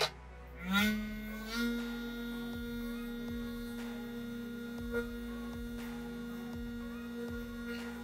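Electric vibration motor of a stainless-steel rotary vibrating sieve starting: a sharp click, then a rising whine about a second in that settles into a steady electric hum as the sifter runs loaded with dry trim. A short knock comes about five seconds in.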